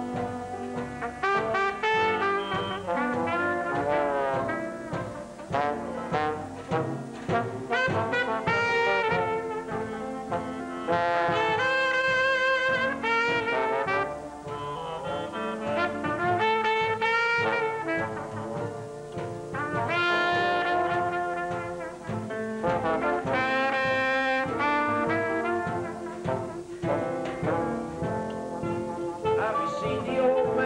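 Traditional jazz band playing live: trombone and trumpet carry the melody in an instrumental passage, over drums and string bass.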